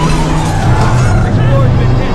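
Movie sound effects of debris tearing through a spacecraft: a loud, dense rushing noise over a deep, steady low drone.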